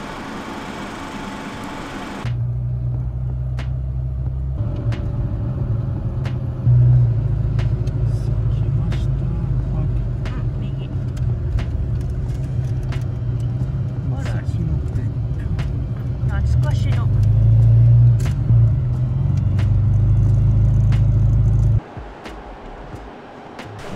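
Classic Mini Cooper driving, heard from inside the cabin: a loud, steady low engine and road drone that steps up in level a few times as it pulls away and picks up speed. Scattered light clicks and knocks run through it.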